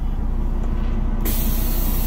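Peterbilt 389 diesel engine idling, heard from inside the cab. A little past halfway, a loud, steady hiss of air starts suddenly and keeps going.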